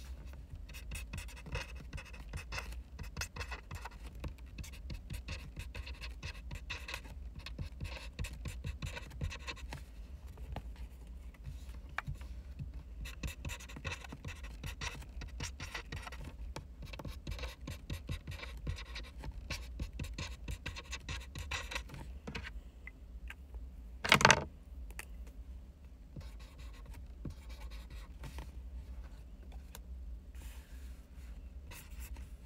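Pen scratching on paper in quick, irregular strokes: handwriting. Broken once, late on, by a short loud bump.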